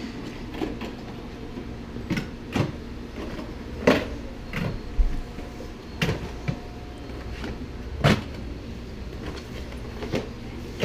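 Tins and a cardboard box being moved about inside a wooden cupboard: irregular knocks and clunks, several seconds apart, with the loudest about four, five and eight seconds in, over a steady low hum.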